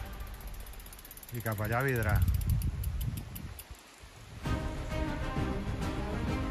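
Mountain bike passing close on a leaf-covered trail, a brief voice as it comes by, then the rear hub's freewheel clicking rapidly as the rider coasts. Background music comes back in about four and a half seconds in.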